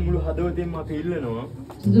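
Voices speaking in a small room, with bending, sing-song intonation, over a low steady hum.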